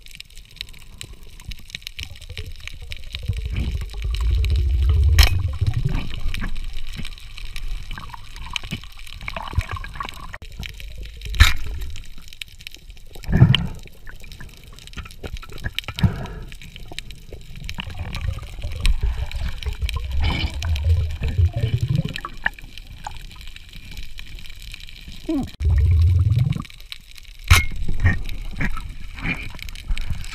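Underwater water noise heard through a camera housing: low swelling rushes and gurgles of water moving past, with a few sharp clicks or knocks along the way.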